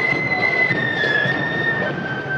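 Marching flute band playing: the flutes hold a long high note, then step down to lower notes about a second in, over the band's dense backing.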